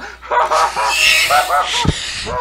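Several men's voices crying out and laughing without words in dismayed reaction, overlapping one another, with a single thump just before the end.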